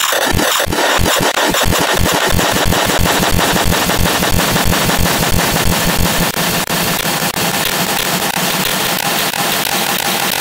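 Loud, heavily distorted edited audio: a harsh hiss across all pitches over a deep pulse that speeds up from a few beats a second until it merges into a continuous low buzz about halfway through.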